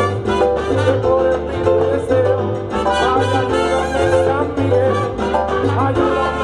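Live salsa band playing loudly: piano, upright bass, trumpet and hand percussion (bongos, congas, timbales) over a steady, stepping bass line.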